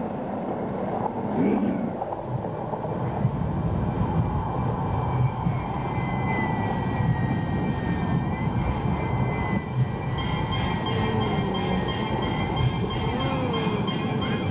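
Power tool motor running steadily with a dense rumble; a high whine comes in about five seconds in, and from about ten seconds in the sound carries several steady high tones.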